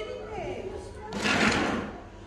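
Faint voices, with a brief hissing rush of noise about a second in.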